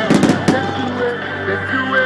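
Aerial firework shells bursting: a rapid cluster of sharp bangs in the first half second, then quieter crackle, with music playing underneath.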